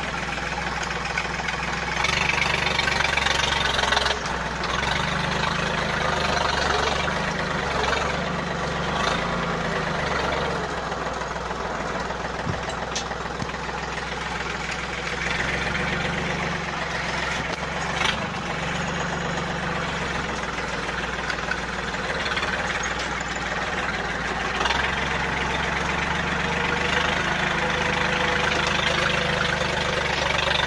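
Yanmar 1145 tractor's diesel engine running steadily while pulling a five-shank subsoiler through the soil, its note stepping up and down with the load. A few short knocks stand out over it, the clearest about eighteen seconds in.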